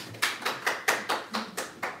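A small audience applauding, with separate hand claps heard individually, about six a second.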